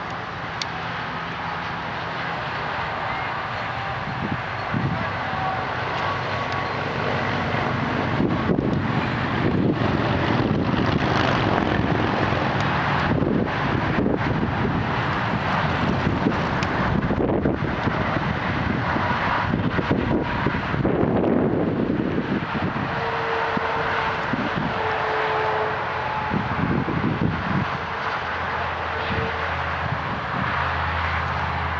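A steady drone of a distant engine, with wind on the microphone.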